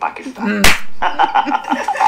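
A single sharp smack about two-thirds of a second in, among voices.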